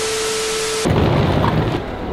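A hiss carrying one steady held tone, cut off abruptly about a second in by a louder, deeper rumbling noise that eases into a steady rush, an edited transition effect after the talking.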